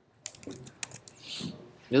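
Computer keyboard keys clicking: about half a dozen quick presses in the first second, followed by a short soft hiss.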